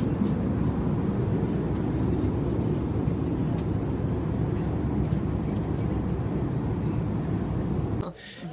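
Steady low rumble of an airliner's engines and rushing air, heard inside the passenger cabin.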